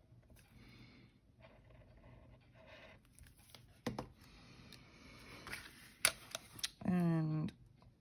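Quiet paper handling on a cutting mat: faint rustling and a few light clicks as glued paper pieces are picked up and laid down, with a brief vocal sound near the end.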